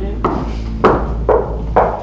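Knuckles knocking on a wooden door frame: four slow knocks about half a second apart, the first one lighter.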